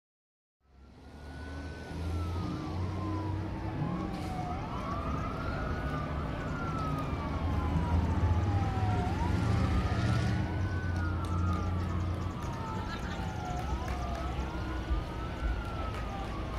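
Emergency vehicle sirens wailing, two overlapping sweeps: one pitch rising quickly and the other falling slowly, again and again. Beneath them a steady low engine rumble. The sound fades in about half a second in.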